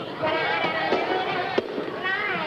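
Studio audience laughing, a dense crackle of many voices, with one sharp knock about one and a half seconds in.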